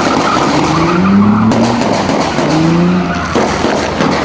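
A car engine revving in several rising pulls while its tyres squeal and skid, as when a car spins doughnuts.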